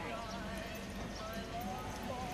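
Hair-cutting scissors snipping in short, irregular clicks, with faint voices in the background.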